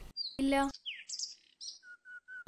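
Small birds chirping in the background: a run of quick high chirps sliding up and down in pitch, then three short even notes near the end.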